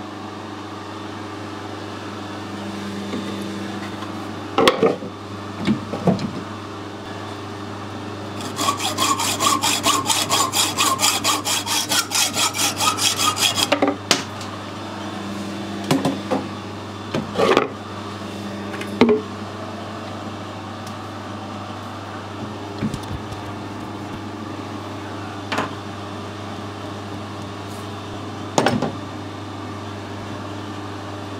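Hand hacksaw cutting through a brass fitting held in a lathe chuck: about five seconds of quick, even strokes in the middle. Several single knocks and clunks come before and after, over a steady background hum.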